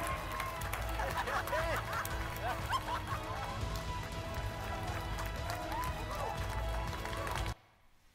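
Mission control team at JPL cheering and shouting over music at the InSight Mars lander's confirmed touchdown, played back through the hall's speakers; it cuts off abruptly shortly before the end.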